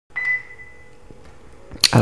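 A short high-pitched electronic beep right at the start, fading out within about a second, over faint hiss. A brief sharp noise comes just before the end.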